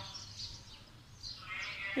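A pause in a man's talk: faint background noise, with a soft rush of noise building near the end just before he speaks again.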